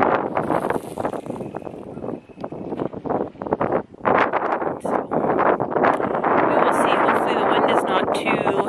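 Strong wind buffeting the microphone in rough gusts, loud and steady through the second half, with a woman's voice talking over it.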